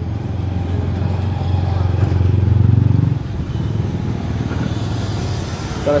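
A motorcycle engine running steadily at idle. It revs up briefly, rising about two seconds in, then drops back at about three seconds.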